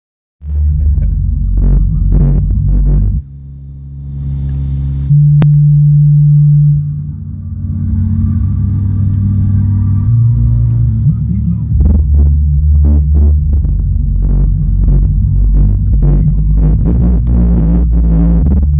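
Bass-heavy music played very loud through a competition car-audio system of two DLS Ultimate UR15 15-inch subwoofers, heard from inside the car's cabin. It has deep, sustained bass notes under a beat. Around five to seven seconds in, a single low tone is held loud.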